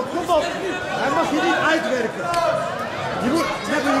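Overlapping voices: several people talking and shouting at once in a large hall.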